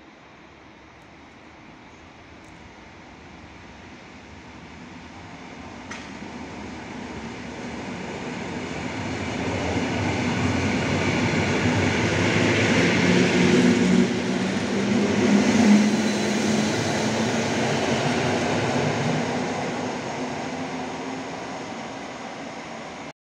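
PKP EN57 electric multiple unit passing along the platform: its wheels and motors grow steadily louder as it approaches, are loudest as it goes by about two-thirds of the way through with a low hum, then fade as it draws away.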